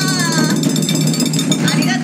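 A fast drum roll on a chindon-ya's drum, a dense rapid rattle of strokes, under a long held voice note that slides slowly down and stops about half a second in.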